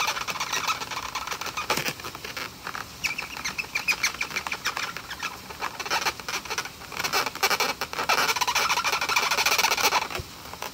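Marker tip rubbing and squeaking on an inflated latex balloon as small circles are coloured in, a fast run of scratchy squeaks that wavers in pitch.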